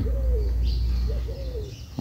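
A steady low hum with a few faint cooing calls of a dove in the background, each a short rise and fall in pitch, the last about halfway through.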